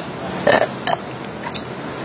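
A person burping: a loud burp about half a second in, then a shorter one just after.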